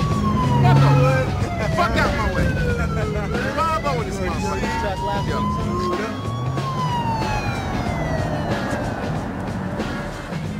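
Police car siren wailing in a slow rise and fall, about one cycle every six and a half seconds, over a car's running engine.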